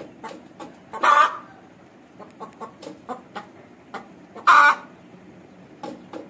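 Aseel hen pecking grain from a feeder pan, making a run of light, quick ticks. Two loud clucks come about a second in and again about four and a half seconds in.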